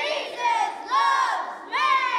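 A group of children shouting together, three loud high-pitched calls in quick succession, each rising and then falling.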